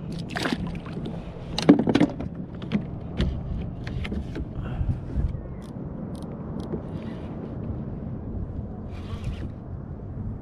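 Knocks and clatter of fishing gear being handled on a plastic kayak, loudest in a pair about two seconds in, with smaller ticks after, over steady wind and water lapping at the hull.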